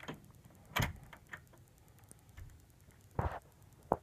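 A handful of scattered knocks and clicks: one sharp knock about a second in, a few fainter ticks after it, and a longer double thump near the end.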